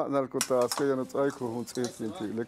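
A man talking steadily, with one sharp clink about half a second in.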